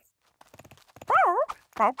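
A quick run of faint, light taps, then high, wavering cartoon voice calls from about a second in.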